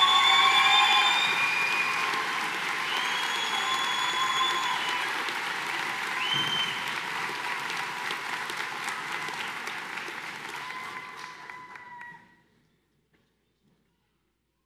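Audience applause for an award recipient, with a few long, high cheers over it. The clapping is loudest at the start, slowly thins, and cuts off about twelve seconds in.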